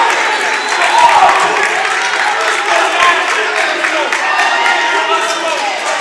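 Gymnasium crowd cheering and shouting, many voices and some clapping blending into a steady din: the reaction to a go-ahead basket in the final second.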